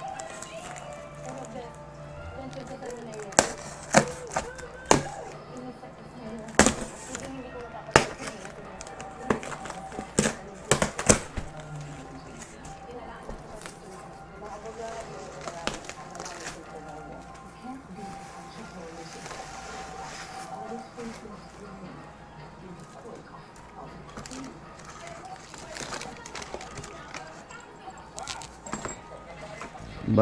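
Cardboard box being opened and unpacked by hand: a run of sharp cracks and knocks from about three to eleven seconds in, then quieter rustling of plastic wrapping, over faint background music.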